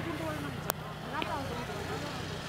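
A motor vehicle engine running steadily under background voices, with a single sharp click about two-thirds of a second in.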